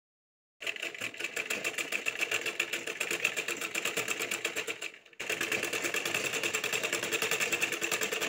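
A domestic sewing machine stitching at a steady, fast rate, a rapid even rhythm of needle strokes. It starts about half a second in and runs in two stretches with a brief break about five seconds in.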